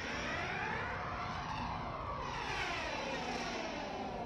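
Aircraft fly-over sound effect opening the song: a rushing engine noise that fades in and holds steady, with a sweeping whoosh moving through its tone.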